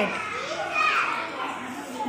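Children's voices talking quietly among themselves, unclear speech with no music or other sound.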